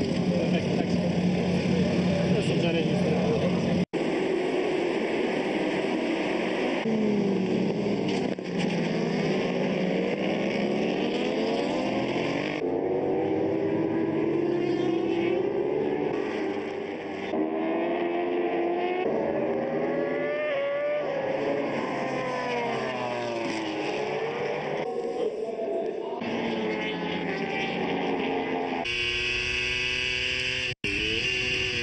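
Superbike racing motorcycle engines revving up and down through the gears as the bikes pass, across several cut-together shots. The sound drops out briefly about four seconds in.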